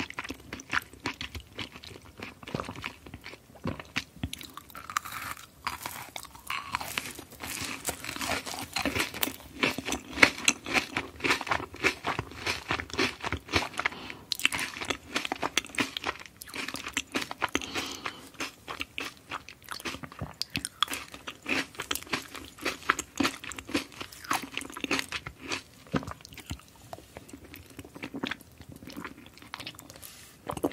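Close-miked chewing of a sugar-coated gummy jelly candy slice: dense, irregular wet crunching and clicking as the sugar crust and jelly are bitten and chewed.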